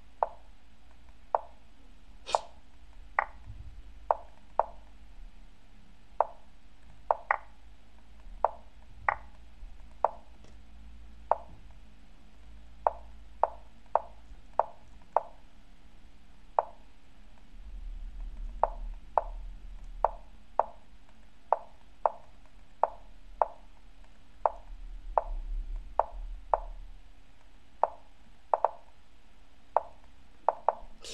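Lichess online chess move sounds: short wooden clicks, one for each move, coming irregularly at about one or two a second during a fast bullet game. A faint low rumble comes twice, in the second half.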